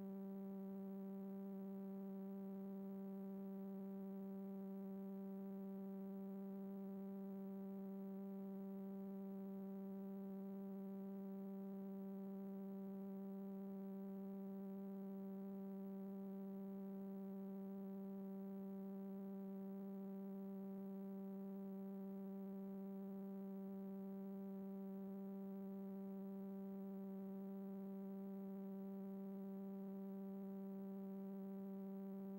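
A steady electrical hum with a row of higher overtones, unchanging throughout: line hum on the audio of a video feed with no signal.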